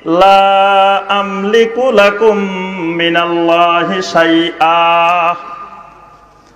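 A man chanting a line of Arabic hadith in a drawn-out, melodic sermon recitation. He holds long notes that slide slowly between pitches, and the voice fades out near the end.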